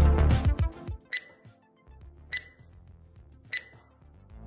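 Beat-driven background music cuts off about a second in, followed by three short electronic beeps about a second and a quarter apart: an interval timer's get-ready countdown to the start of the next timed drill.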